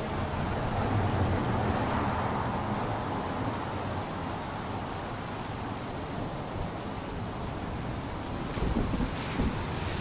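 Steady outdoor street ambience at night: an even rush of noise over a low rumble, swelling slightly about a second in, with a few soft low thumps near the end.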